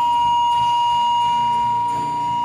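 Electronic keyboard holding a single high note steadily, with a softer low note coming in about a second in.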